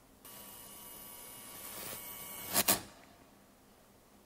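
Faint sound effect from a music video's intro: a hiss with thin steady high tones that swells slowly and ends in a brief sharp whoosh about two and a half seconds in.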